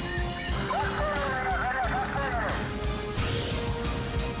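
Electronic theme music of a TV news programme's closing titles. About half a second in, a rapidly warbling, wavering pitched sound rides over it for about two seconds, then the music carries on with held tones.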